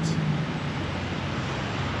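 Steady road traffic and engine noise, a continuous rush with a low engine hum underneath.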